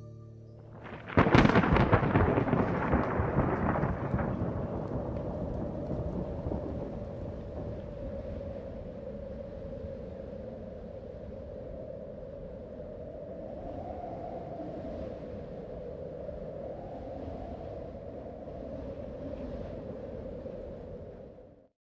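A sudden loud crash about a second in, crackling and dying away over a few seconds, followed by a long steady rushing noise with a faint wavering hum.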